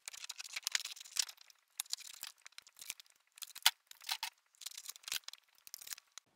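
Scissors cutting through a laminated paper sheet: an irregular run of crisp snips with the plastic laminate crinkling, and one sharper snip about halfway through.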